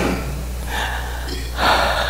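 A person drawing a sharp breath in near the end, with a fainter breath about a second in, over a steady low electrical hum.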